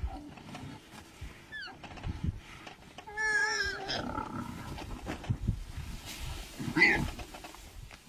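Hyenas and a lion calling at a kill: a wavering, whining call about three seconds in, scattered low growls, and a loud rough snarl near the end.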